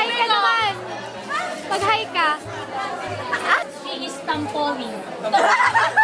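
Several people chattering at once, with background music with a recurring bass note.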